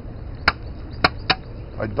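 Three sharp snaps of dry twigs and brush stems breaking underfoot, a short one about half a second in and two close together a second later.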